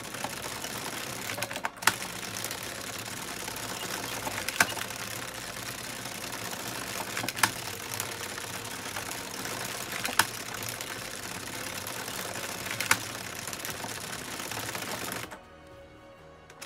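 Addi Express circular knitting machine being cranked by hand: a steady rattling clatter of its plastic needles running round the carriage, with a louder click about every three seconds. The clatter stops briefly near the end.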